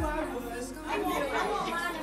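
Chatter of many women talking over one another around the painting tables, several voices overlapping at once, with a short low thump right at the start.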